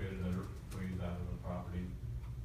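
Indistinct speech in a meeting room: a voice talking in short phrases, too unclear to make out words.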